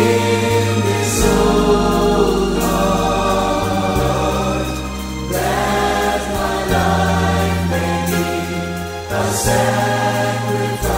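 Praise-and-worship music: a choir singing over a band, with held bass notes that move to a new note every two or three seconds and cymbal splashes.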